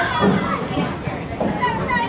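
Indistinct young voices calling out and chattering, high-pitched and overlapping, with no clear words.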